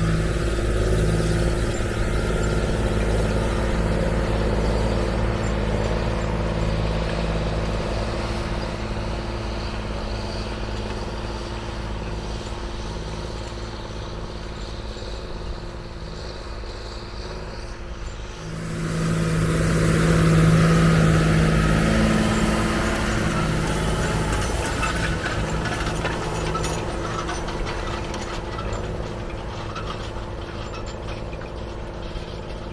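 John Deere tractor engine running steadily under load while it pulls a disc harrow. The sound fades as the tractor moves away. About two thirds of the way in it jumps suddenly louder as a tractor with its harrow comes near, then eases off again.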